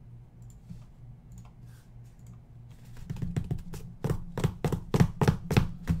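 Computer keyboard typing: a run of irregular key clicks begins about halfway through, over a steady low electrical hum.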